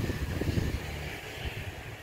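Wind buffeting the microphone of a handheld camera outdoors, a fluttering low rumble.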